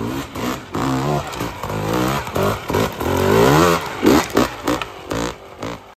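Dirt bike engine revved in repeated short bursts as it is worked over rocks and logs on a technical trail, its pitch rising and falling with each blip of the throttle. It is loudest about three to four seconds in.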